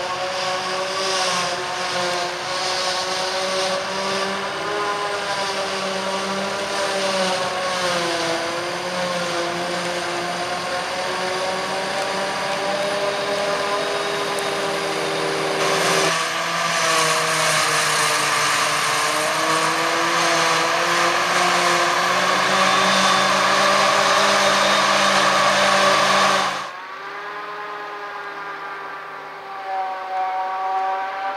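Claas Jaguar 840 self-propelled forage harvester chopping grass, its engine and chopping cylinder giving a steady whine of several tones, with a tractor running alongside. The pitch sags briefly and recovers under the load of the heavy crop, about eight seconds in and again later. The sound grows louder about halfway through and drops suddenly to a quieter running sound near the end.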